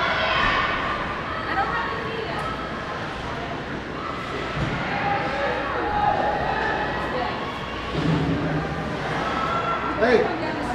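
Indistinct shouting and chatter of voices in an ice arena, in a room that echoes.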